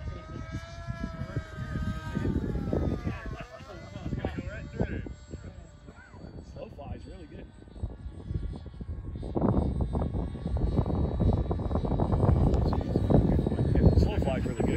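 Brushless electric motor and pusher propeller of an FMS Flash 850mm RC jet in flight: a whine whose pitch bends and then falls over the first few seconds. From about two-thirds of the way through, a louder rumbling rush builds and holds to the end.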